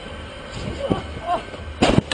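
A person landing hard on a trampoline's padded frame after a failed flip, a loud thump near the end. Brief voices call out shortly before it.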